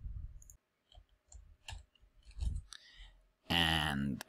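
Scattered clicks of a computer keyboard and mouse as a short password is typed into a form field, with a few soft low thumps between them. A man starts speaking near the end.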